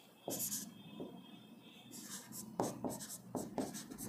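A marker pen writing on a board: a run of short, faint scratching strokes as he writes a short word and number.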